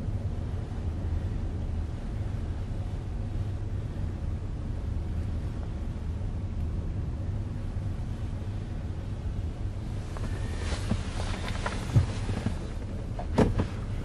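Ford Explorer's engine idling, heard from inside the cabin as a steady low hum. Two sharp clicks come near the end.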